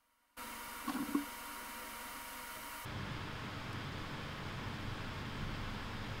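Steady background hiss of a recording's room noise, cutting in abruptly about a third of a second in, with a brief low hum-like sound near one second. Shortly before the halfway point the hiss changes to a lower, fuller noise.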